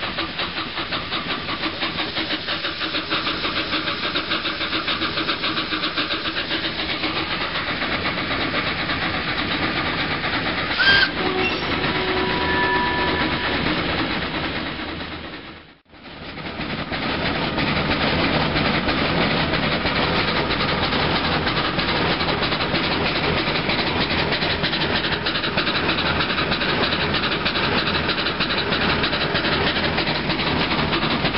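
The Coffee Pot vertical-boiler steam locomotive running, heard from its footplate: a fast, even beat from the engine and wheels with steam hissing from the boiler. The sound fades out briefly about halfway through, then carries on as before.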